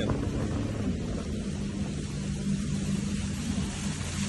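Small motor craft's engine running steadily at speed, over the constant rush of water and wind.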